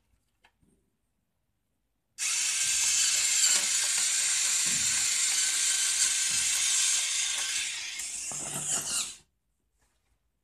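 Homemade metal RC tank with hinge-and-screw tracks running, its drive and tracks making a steady mechanical noise that starts suddenly about two seconds in and stops about seven seconds later.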